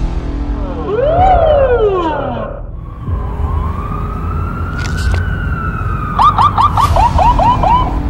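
Police siren: a quick wail rising and falling, then a longer wail climbing slowly and easing down, switching near the end to a fast yelp of about five or six chirps a second, over a low rumble.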